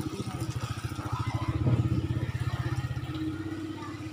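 A small engine running steadily nearby, its rapid, even pulse the loudest thing heard, with faint voices behind it.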